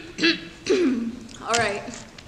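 A person's voice: three short vocal sounds, brief utterances or hums, one falling in pitch, with some throat clearing.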